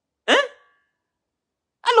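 Speech only: a man's short interjection "hein" with a rising pitch, and he starts speaking again near the end.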